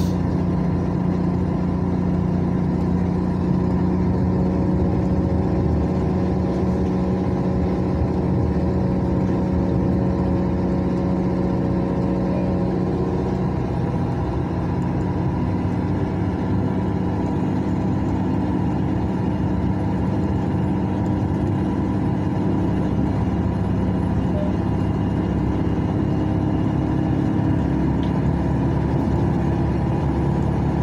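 Steady engine hum and tyre and road noise of a moving vehicle, heard from inside the cabin. The engine note changes about halfway through.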